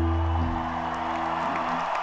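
A rock band's last held chord dies away about half a second in, leaving a large crowd applauding.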